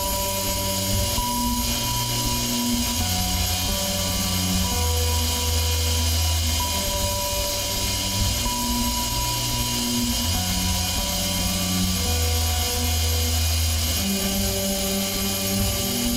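Ambient instrumental music: slow, deep bass notes, each held for a second or two, under sustained higher tones and a soft, airy wash.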